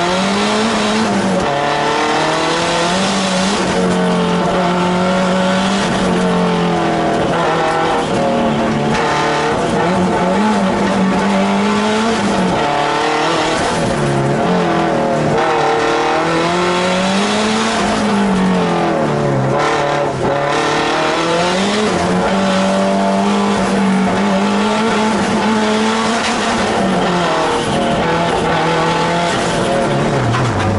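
Fiat Coupé Turbo race car's engine driven hard, heard from inside the stripped-out cabin: the revs climb and drop again and again as the driver accelerates, brakes and shifts between the slalom gates.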